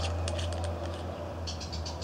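Light clicks and scratches of a metal fire piston's threaded end cap being unscrewed and handled, mostly at the start and again near the end, over a steady low hum.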